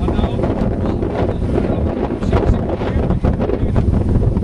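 Wind buffeting the camera microphone: a steady, loud, low rush.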